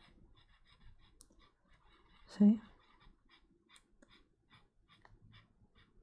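Blending-pen nib rubbing over coloured pencil on paper in small circular strokes: a faint, soft scratching, about five strokes a second. A short hum of voice cuts in once about two and a half seconds in.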